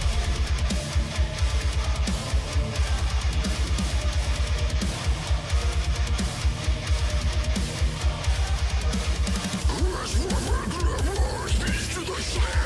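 Deathcore track playing: heavy distorted electric guitars over rapid, programmed kick drums, with vocal-like lines coming in near the end.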